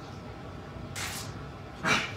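A man drinking a michelada from a glass, then two short, sharp breaths after the sip: a softer one about a second in and a louder one near the end.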